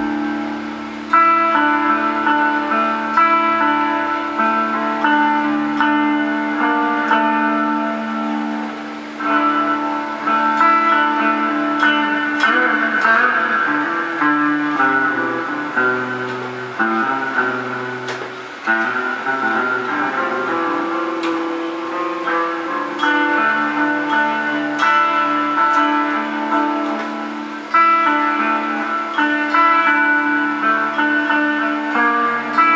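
Electric guitar in Drop D played clean through Amplitube 3's amp simulation with digital reverb: ringing chords and single-note lines, a new chord struck about every two seconds.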